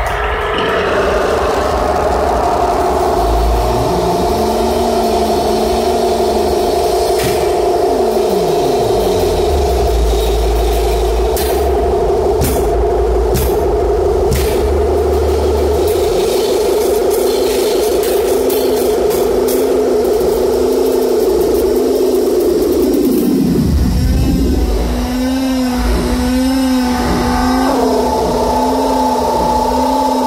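Loud live band music: a drum kit's kick drum and cymbal crashes under long, wavering sustained tones. About 24 seconds in, the tones swoop steeply down in pitch and settle into a lower wavering drone.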